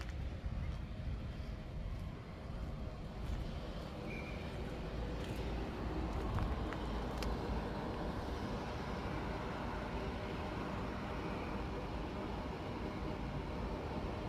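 Steady outdoor background noise, mostly a low rumble, with a few faint ticks.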